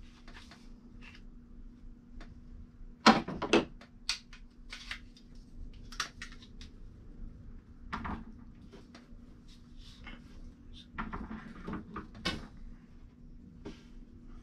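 Tippmann M4-22 .22 LR rifle being taken apart by hand: a series of sharp clicks and clacks as the upper receiver is separated from the lower and set down on a counter. The loudest is a pair of clacks about three seconds in.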